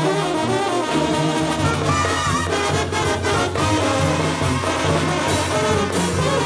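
Live banda brass section playing an instrumental passage: trombones lead over a sousaphone bass line and a steady beat.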